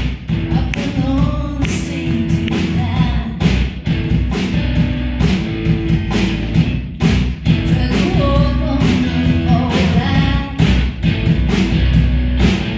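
Live rock band playing a song: drums keeping a steady beat under electric guitars, keyboard and acoustic guitar, with a woman singing the lead vocal.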